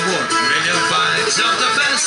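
Live Irish folk session music: acoustic guitars and other instruments playing a lively tune.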